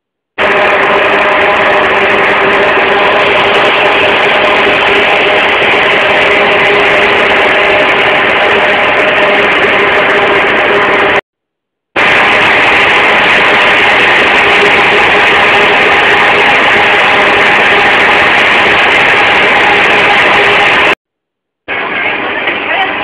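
A loud, steady mechanical drone with a constant hum running through it. It cuts out abruptly for a moment about halfway through, then resumes unchanged.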